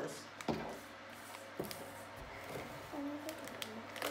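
White powder poured from a plastic bag into a plastic tub: faint rustling of the bag and the pour, with a couple of light knocks against the tub about half a second and a second and a half in.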